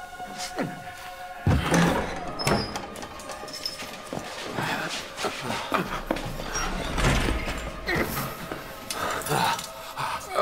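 Film soundtrack: dramatic music under men's cries and sudden strikes, with a heavy thump about one and a half seconds in.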